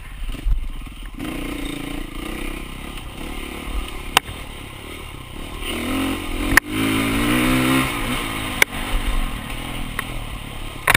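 Dirt bike engine running, revving up and falling back a little past the middle. Three sharp knocks as the bike bangs over the trail, the loudest about two-thirds of the way in.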